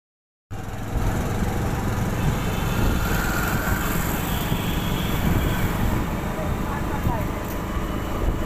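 Steady low wind rumble on the microphone together with street traffic noise from a moving ride, with indistinct voices mixed in.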